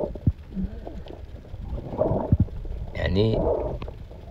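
Low, muffled water noise from an action camera held underwater, with irregular knocks and swells. About three seconds in there is a brief muffled voice-like sound.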